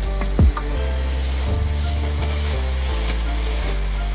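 H0-scale model freight wagons rolling past on the track, their wheels making a rattling hiss that dies away shortly before the end. Background music plays underneath, and there is a sharp thump about half a second in.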